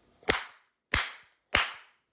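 Three sharp slaps of a man's hands, evenly spaced a little over half a second apart.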